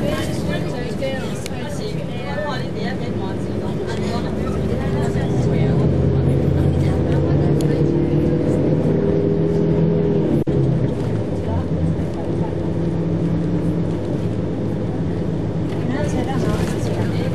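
Steady engine and road drone inside a moving bus, growing louder for a few seconds midway, with passengers' voices in the background and a single click about ten seconds in.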